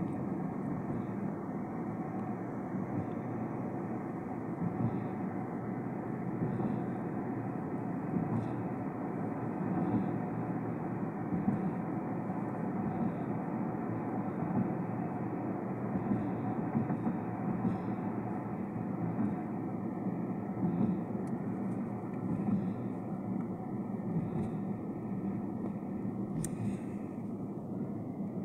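Steady road and engine noise of a moving vehicle, heard from inside its cabin, muffled.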